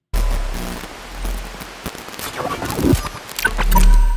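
Sound design of an animated logo intro: a sudden noisy whoosh over a deep bass rumble, a scatter of sharp crackling clicks, and a swell that builds near the end.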